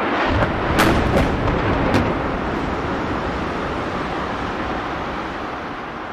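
A deep explosion boom that quickly swells into a heavy rumble, with a few sharp cracks in the first two seconds, then slowly fades. It is the sound of the second airliner striking the World Trade Center.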